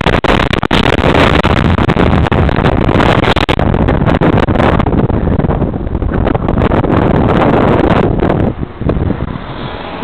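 Wind rushing over a bike-mounted camera's microphone while riding in traffic, loud and rough, with car noise mixed in. The rush drops away about eight and a half seconds in as the bike slows.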